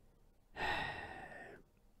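A man's long sigh, one breathy exhalation starting about half a second in and fading out over about a second.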